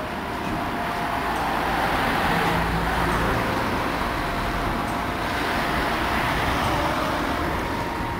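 Road traffic: cars driving past close by, their tyre and engine noise swelling as each goes by, about two to three seconds in and again from about five seconds.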